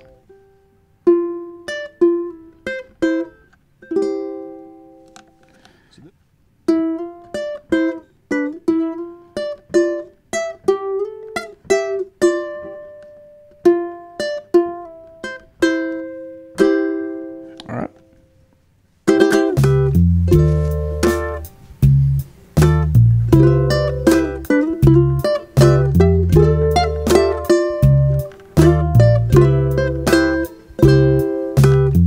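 Ukulele playing a soul-style fill in double stops with slides, slowly and note by note with pauses between phrases. About nineteen seconds in, a backing track with bass and drums comes in and the ukulele plays the fill in time with it.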